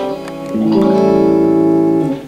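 Clean electric guitar, a Fender Telecaster, playing an A7 chord through a compressor. A pick click comes first, then about half a second in the chord's notes come in one after another and ring out at an even level.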